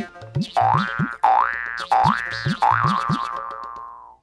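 Cartoon-style comedy 'boing' sound effect: four rising, springy glides in a row, the last one held and fading out near the end.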